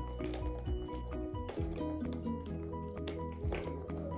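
Background music: a tune of short melodic notes over a steady bass line with light percussion.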